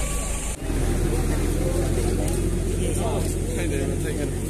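Several people talking indistinctly, voices overlapping, over a steady low rumble; the sound dips and changes briefly about half a second in.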